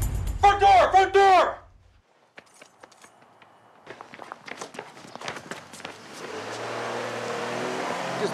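A loud shout over a low drone, then after a short lull a quick scatter of footsteps and knocks, with a low engine hum rising from about six seconds in.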